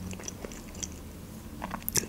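Faint mouth sounds close to the microphone: a few soft clicks, with a sharper one near the end.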